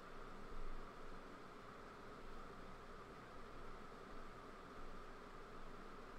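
Faint steady background hiss with a low hum: the room tone of a desk microphone, with a soft brief sound about half a second in.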